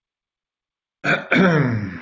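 A man coughing and clearing his throat about a second in: a short first hack, then a longer rasp that falls in pitch.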